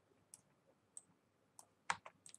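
Faint, scattered clicks from computer input devices, a few over two seconds, the loudest near the end.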